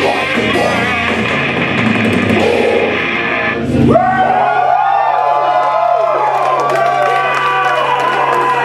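Live death metal band with distorted guitars and drums playing the final bars of a song, cutting off sharply about halfway through. A crowd then cheers and whoops over a low steady hum.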